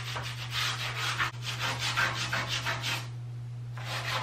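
Old toothbrush scrubbing grime off the edge of a bathtub where it meets the wall, in quick back-and-forth strokes that pause briefly near the end.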